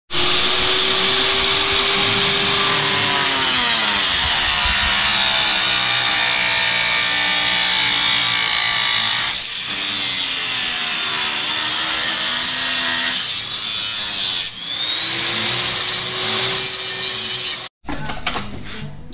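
Angle grinder working steel: a loud, steady whine whose pitch sags about three seconds in as the disc is pressed into the metal, and dips again a little before halfway. Near the end it falls back, the pitch rises again as the disc comes off the work and spins free, and then it stops abruptly.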